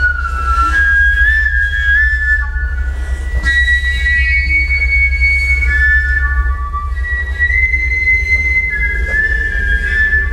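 High, whistle-like tones played on a small wooden pipe, each note held for a second or two before stepping to a new pitch, with other notes overlapping. Beneath them runs a steady low drone.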